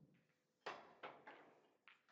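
Four short, sharp clicks and knocks, the first and loudest about two-thirds of a second in, the last near the end.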